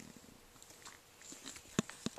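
Faint handling noise from an acrylic kaleidoscope held up to the camera and turned in the hand: soft rubbing and light ticks, with one sharp click near the end.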